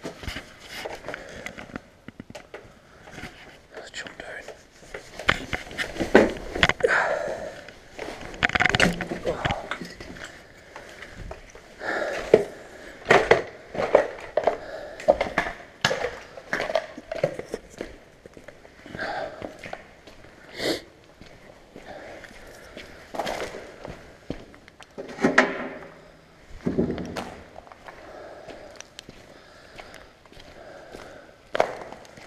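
Footsteps on a debris-strewn concrete floor: irregular crunches and knocks, with a man's voice speaking low at times.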